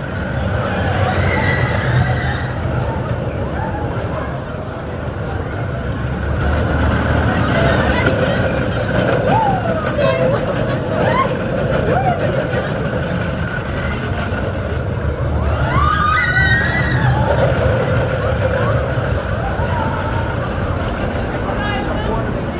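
Vekoma junior roller coaster train running along its steel track with a steady rumble, while riders' voices call out over it, most clearly about halfway through and again a few seconds later.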